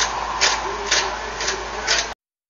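Zucchini being grated on a metal box grater: about five rasping strokes, roughly two a second.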